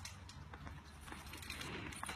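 Faint outdoor background noise with a low steady hum and a few light ticks.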